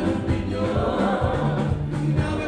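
Live band music with singing: a male lead voice with group vocals over a moving bass line and a steady drum beat, with conga drums and electric guitar in the band.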